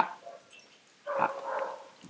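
A young boxer dog gives one short, steady whine lasting under a second, about a second in.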